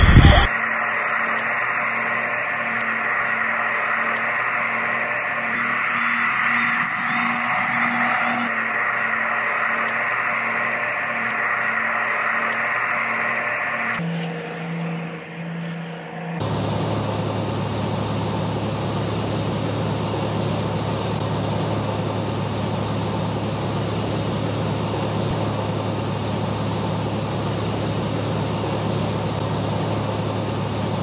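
Steady drone of the Altius-U drone's twin propeller engines, with a hum that pulses about twice a second. About halfway through it changes abruptly to an even rushing noise over a low steady hum.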